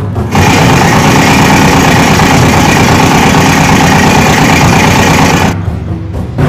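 A loud, steady motor sound that starts suddenly and cuts off abruptly about half a second before the end.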